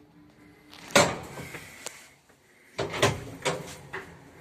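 Old ZREMB passenger lift arriving and its doors being opened. The low running hum ends, a heavy thud comes about a second in, then a single click, then a clatter of several knocks near the end.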